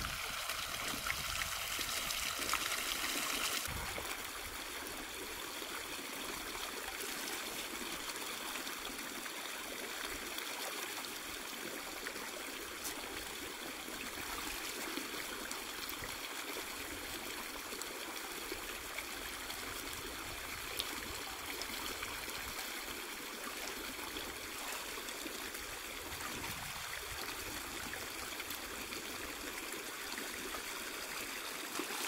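Shallow river water running over rocks: a steady rush, louder for the first few seconds, then a softer, even trickle after a sudden drop.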